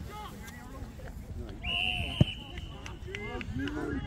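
A referee's whistle blown once, a steady shrill tone lasting about a second, over shouting from players and spectators. A single sharp knock lands in the middle of the whistle.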